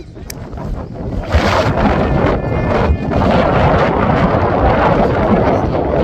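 Wind buffeting the camera's microphone: a loud, gusting rush of noise that swells about a second in and holds.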